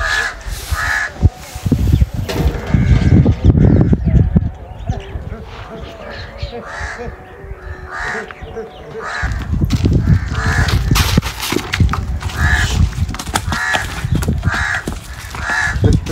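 A bird calling again and again, in short calls every second or so, over a low rumble that swells a few seconds in and again through the second half.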